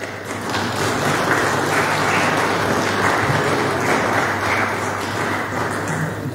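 Applause from members of parliament at the close of a speech, swelling over the first second, holding steady, then tapering off near the end.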